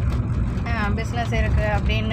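A woman talking inside a car, over the car's steady low rumble.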